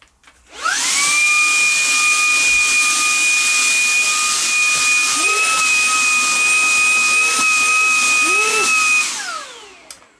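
Shark cordless handheld vacuum cleaner switched on about half a second in: the motor spins up fast to a steady high whine over rushing air. It is switched off about nine seconds in and whines down.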